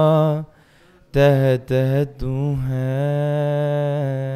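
A solo male voice sings a Sikh Gurbani hymn in a slow chant, holding long notes. A held note ends about half a second in. After a short pause come two brief syllables, then a long sustained note from about two seconds in.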